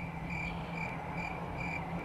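Cricket chirping, short even chirps about two a second over a low steady hum: the comic 'awkward silence' cricket sound effect.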